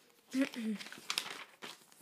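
Glossy catalogue pages rustling and crinkling as they are turned by hand, with a short vocal murmur about half a second in.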